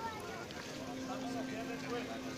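Crowd of onlookers talking, many voices overlapping with no clear words, over a steady low hum.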